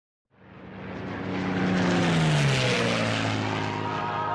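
Propeller aircraft engine fading in from silence and growing loud, its pitch dropping about halfway through as if passing by, then holding a lower steady drone.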